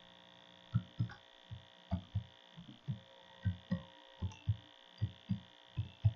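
Computer keyboard typing: about fifteen dull key taps at an uneven pace, starting just under a second in. A steady electrical hum runs underneath.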